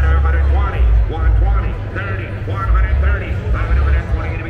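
Crowd chatter: many people talking over one another in a large tent, with no single voice standing out. Under it runs a strong, uneven deep rumble.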